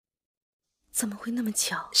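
Dead silence for about the first second, then a voice begins speaking quietly.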